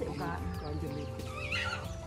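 A goat bleating, with a short call early on and a wavering, quavering call near the end, over soft background music with steady held notes.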